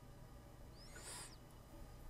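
Near silence: room tone, with a faint brief hiss about a second in.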